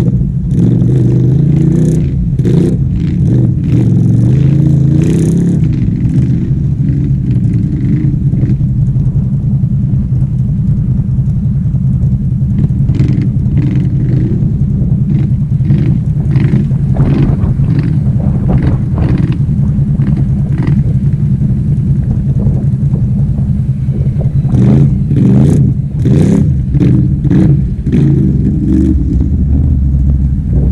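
Can-Am Renegade XMR 1000R ATV's V-twin engine running loud and steady under load through boggy ground, heard up close from the handlebars. Repeated knocks and clatter of the machine working over rough terrain come through, busiest near the end.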